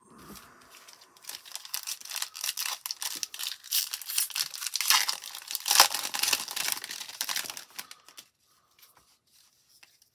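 A foil-lined Topps trading-card pack wrapper being torn open and crinkled in the hands, a dense crackling rustle that starts about a second in, is loudest in the middle, and dies away after about eight seconds.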